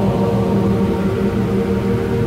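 Church choir singing an anthem with its accompaniment, holding sustained chords.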